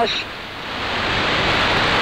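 Shortwave AM receiver's speaker hissing with band noise in a pause of the broadcast voice. The hiss swells up steadily over the two seconds, as the receiver's automatic gain control raises the gain in the gap.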